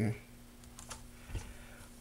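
A few faint, light clicks and one soft knock, about one and a half seconds in, from a marker and a steel tape measure being handled on a particle-board shelf.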